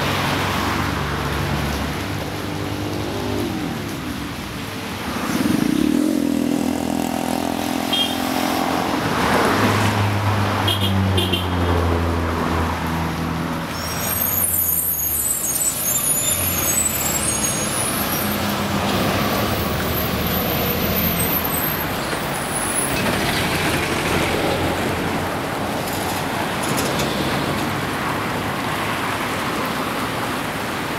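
City street traffic: cars, motorbikes and buses passing, their engine notes rising and falling as each goes by. About halfway through there is a brief high-pitched brake squeal from a heavy vehicle.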